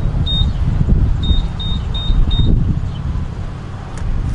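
Gas pump keypad beeping as its buttons are pressed: five short high beeps, the first on its own and the last four in quick succession, about three a second, over a steady low rumble.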